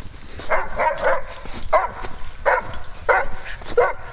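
A dog barks about seven short times: three in quick succession about half a second in, then single barks at roughly even gaps. The barking is a dog's bid to play with another dog that isn't interested.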